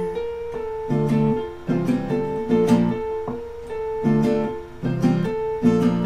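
Acoustic guitar strummed in a repeating chord pattern, an instrumental passage without singing, with a steady high note held underneath the strums.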